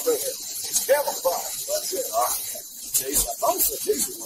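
Indistinct voices of people talking, too unclear for words, over a steady high hiss. Two short knocks come about three seconds in.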